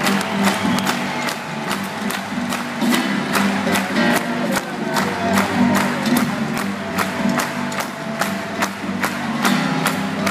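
Jazz band playing live in a large hall, with a steady drum beat and a double bass line, heard from up in the audience.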